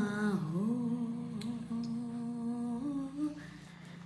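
A woman humming one long held note. It dips in pitch just after the start, holds level, and steps up slightly about three seconds in before fading.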